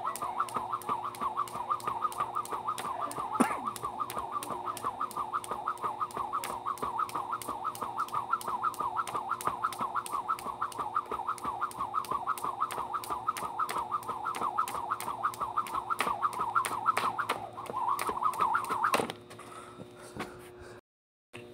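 A fast, steady, rhythmic whirring that keeps pace with a person's continuous jumping, about four to five pulses a second. It stops suddenly about a second before the end, when the jumping ends.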